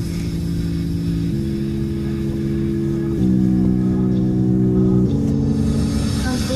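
Pop music playing on the car stereo: held low chords that change about every two seconds. Under it runs the steady low rumble of the car on the road.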